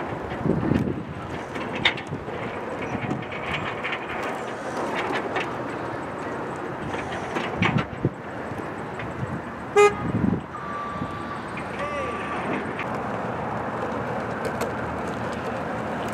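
A pickup-based snowplow truck's engine running as it creeps through a cone course. About ten seconds in there is a short, loud horn-like toot, followed by a steady high-pitched tone lasting about a second.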